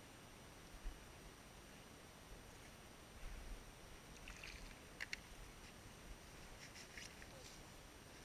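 Faint, intermittent splashing at the water's edge over a quiet background, with a sharp double click about five seconds in and a few dull bumps.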